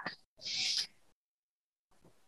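A short, soft hiss of breath into the microphone lasting about half a second, then silence.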